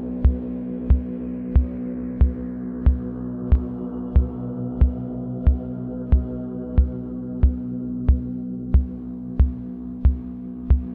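Minimal electronic synth music: a sustained low synth drone under a steady low kick-drum thump that comes about once every two-thirds of a second. The brighter upper layer of the drone fades away over the first few seconds, leaving mostly the low drone and the beat.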